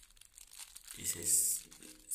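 Thin clear plastic wrapper crinkling in the fingers as it is pulled at to tear it open by hand, without giving way.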